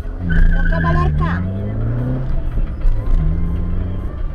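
Car engine and road rumble heard inside the cabin, with a voice calling out loudly in the first second or so.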